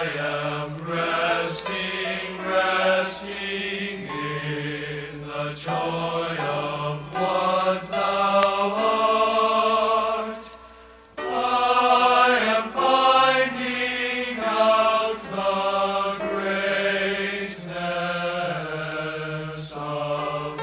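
Men's choir singing a hymn in sustained sung phrases, with a brief break about halfway through before the voices come back in strongly.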